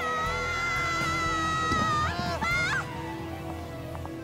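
A long, high scream from a cartoon character falling, held for about two seconds with a wavering pitch, then breaking into short rising cries, over background music.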